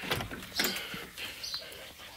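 A few soft knocks and shuffles as someone steps through a shed doorway.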